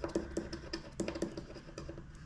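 Scratching the coating off a paper scratch-off card with a thin pointed tool: a run of short, quick scraping strokes.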